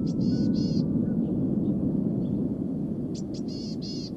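A small bird calling twice, each a quick series of short chirpy notes, once at the start and again about three seconds in, over a steady low rumble.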